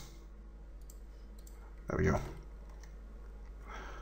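Faint, scattered computer mouse clicks under a low steady hum.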